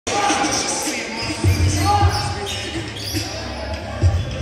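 Basketball bouncing on a hard gym floor during play, with two heavy bounces about a second and a half and two seconds in, amid players' voices.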